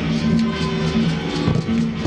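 Background music with held notes and a steady beat.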